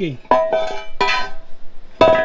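A metal intake manifold clanking against a concrete floor as it is handled and turned over: sharp knocks that ring on at the same pitch each time, about three in two seconds.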